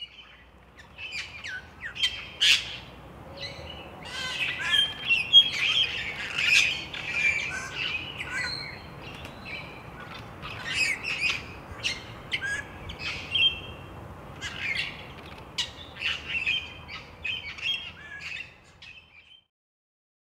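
Cape Parrots calling: loud, raucous, screechy calls, many in quick succession and overlapping, stopping shortly before the end.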